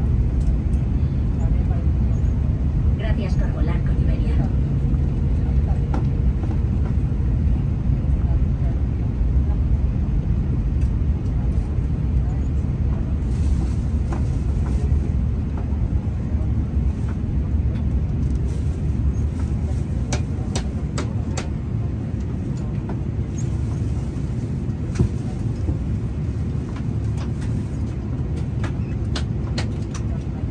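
Steady low rumble of an Airbus A330 cabin in flight during the descent, heard from a passenger seat, with a few light clicks in the second half.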